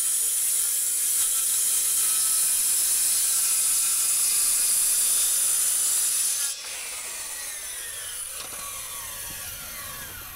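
Handheld circular saw running and ripping through a wooden board, a loud, steady high-pitched whine. About six and a half seconds in the level drops suddenly, and a fainter falling whine follows as the blade spins down.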